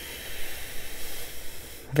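A woman's slow, steady in-breath through the nose, a soft hiss lasting nearly two seconds and ending just as she starts to speak again.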